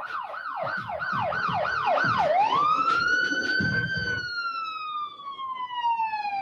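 Emergency-vehicle siren, first in fast yelp sweeps of about three a second, then switching about two seconds in to a slow wail that rises and then falls steadily.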